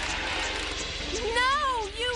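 Background cartoon music; about a second in, a voice breaks into long wavering yells that rise and fall in pitch.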